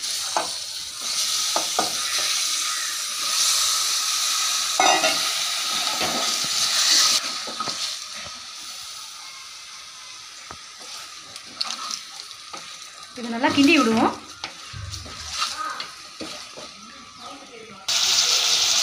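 Chicken pieces sizzling in hot oil and onions in an aluminium pressure cooker, stirred and scraped with a wooden spatula. The sizzle is loudest for the first seven seconds or so, then settles to a quieter hiss.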